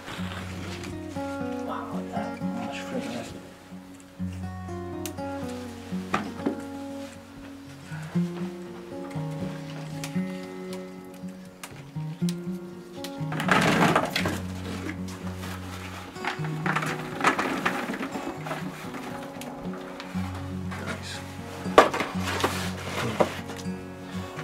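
Background music with held notes that move in steps, joined about halfway through by brief rustling and near the end by a sharp click.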